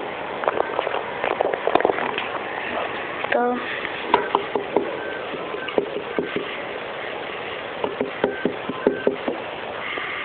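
Handling noise from a plastic fashion doll being moved around a toy dollhouse: irregular light taps and clicks of plastic on plastic over a steady background hiss, with a short pitched sound a little after three seconds in.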